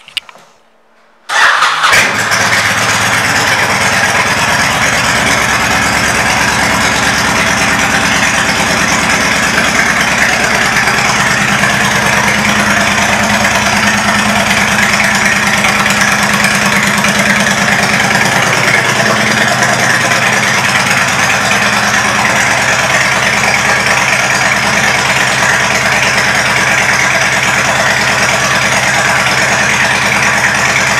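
2004 Honda VTX 1300's 1312 cc V-twin, breathing through aftermarket Cobra exhaust pipes, starting about a second in and then idling steadily.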